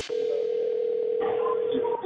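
Telephone ringback tone: a single steady ring of about two seconds, heard through the phone line while the call waits to be answered at the other end.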